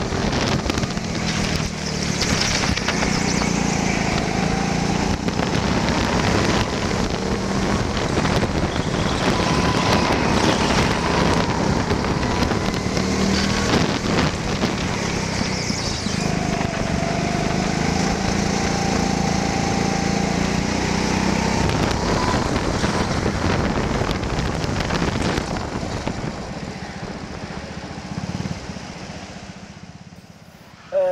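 Indoor hire go-kart running at speed, heard onboard with wind noise on the microphone; its pitch rises and falls through the corners and straights. The sound fades over the last few seconds.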